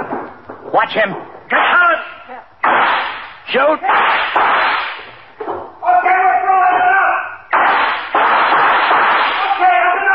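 A gunfight in a radio drama: several sudden gunshots, each ringing on for a second or so, with men shouting and one long held cry between them.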